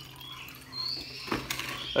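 Water trickling and dripping from a mesh strainer of soaked niger seed into a plastic tub of soaking water, with a couple of light knocks from the strainer being handled in the second half.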